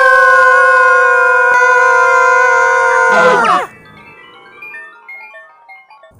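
A long, loud, high 'aaah' cry held at one pitch for about three and a half seconds, bending down as it ends, as the toy characters fall after their bubblegum bubble pops. It is followed by a quieter run of short xylophone-like notes stepping down in pitch, a cartoon falling effect.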